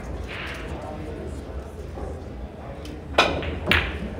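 A pool shot: two sharp clacks of phenolic pool balls about three seconds in, half a second apart: the cue striking the cue ball, then the cue ball hitting an object ball. Background talking from a crowded pool hall.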